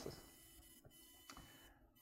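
Near silence: faint room tone with two soft clicks of a laptop key, about a second apart.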